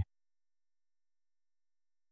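Silence: the audio track drops to nothing between spoken phrases, as if gated.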